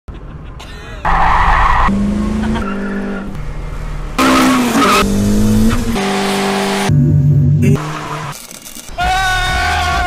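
Short clips of a Mazda Miata's four-cylinder engine revving hard and its tyres squealing in a burnout, cut together so the sound changes abruptly about every second. Near the end comes a long, wavering tyre squeal.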